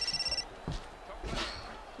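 Mobile phone ringing with a high, rapidly pulsing electronic ringtone that cuts off about half a second in, as the call is taken. A faint knock follows.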